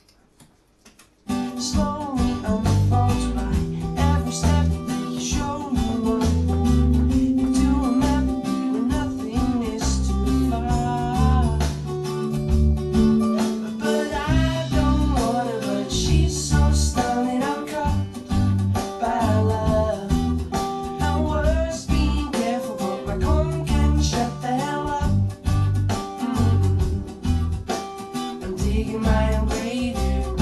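A pop song with acoustic guitar and a man singing, heard over the studio monitors, starting about a second in.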